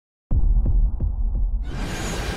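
Cinematic intro sound effect: a deep bass boom that pulses about three times a second like a heartbeat, then swells brighter about one and a half seconds in.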